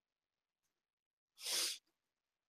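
A single short, sharp burst of breath from a man, about one and a half seconds in, after a silent pause.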